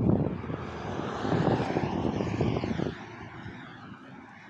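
A rushing noise that swells and then fades over a few seconds, over a crackly low rumble on the microphone that drops away about three seconds in.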